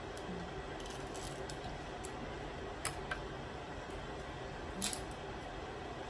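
Snow crab shell being cracked and snapped apart by hand: a few sharp clicks, two close together about three seconds in and a louder one near five seconds, over a steady faint hum.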